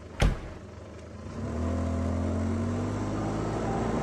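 A single sharp hit, then a car engine running with a steady low hum that comes in about a second and a half later, its pitch sinking slightly.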